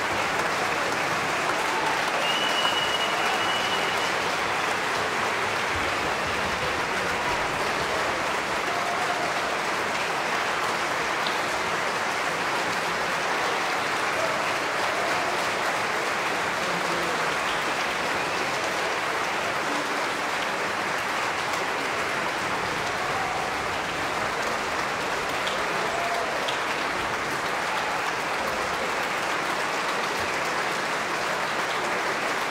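Large concert-hall audience applauding steadily, with a brief high steady tone about two seconds in.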